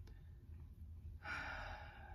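A woman's breathy sigh, a soft exhale of under a second starting a little past halfway, over a faint low room hum.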